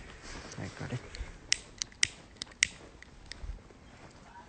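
About six sharp, irregular clicks over roughly two seconds, from a pocket lighter being flicked again and again without catching.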